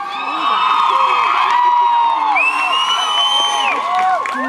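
Concert crowd cheering and whooping, many voices overlapping, several long high whoops held over the general noise.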